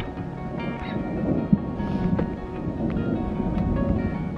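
Background music with held tones laid over a low rumble of thunder and rain.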